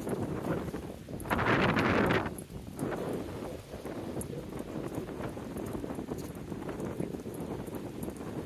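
Footsteps on a concrete pier, with a louder rush of noise lasting under a second about a second and a half in.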